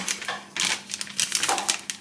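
Plastic wrapper of a puff pastry packet crinkling as it is handled, a run of irregular crackles.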